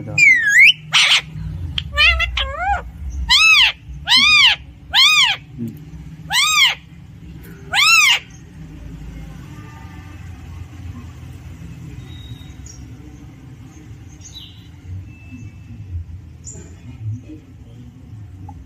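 Alexandrine parakeet giving about eight loud, short calls over the first eight seconds, each rising and falling in pitch. After that only a few faint chirps follow.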